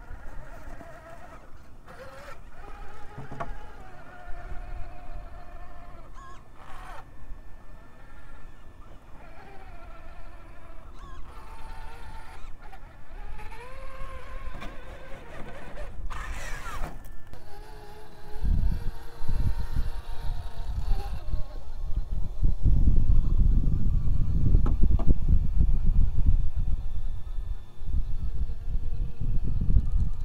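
Axial SCX-6 Honcho RC crawler's electric motor and geared drivetrain whining, the pitch rising and falling with the throttle as it crawls over rock. From about 18 s in, a loud, irregular low rumble becomes the loudest sound.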